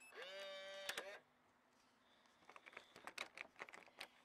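Motorised keypad deadbolt running after its lock button is pressed: a steady whirring tone about a second long. A series of light clicks follows as the brass doorknob is handled.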